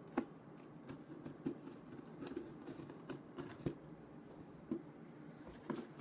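Folding knife scraping and cutting at a cardboard shipping box, with scattered light knocks and scrapes of the blade and box on the desk.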